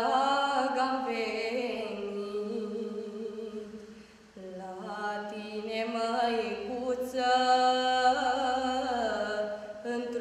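A teenage girl singing a Romanian Orthodox pricesnă (devotional hymn to the Virgin Mary) solo and unaccompanied. She holds long, slow notes with a light vibrato and takes a brief breath about four seconds in.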